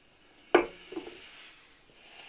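A stemmed whiskey snifter set down on a wooden tabletop: one sharp glassy clink about half a second in, then a couple of softer knocks.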